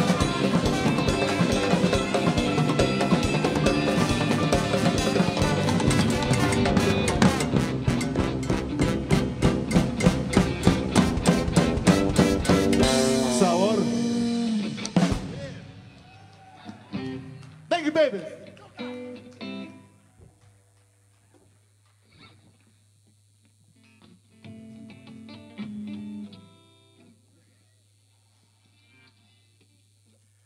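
A live ska band with saxophones, keyboard, timbales and drum kit playing, building to a run of sharp accented drum hits before the song ends about halfway through. The rest is quiet but for faint scattered sounds on stage.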